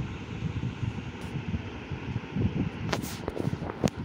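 Steady low background rumble with a faint hiss, and two short sharp clicks near the end.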